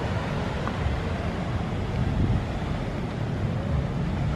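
Beach ambience: wind rumbling on the microphone, uneven and low-pitched, over a steady wash of distant surf.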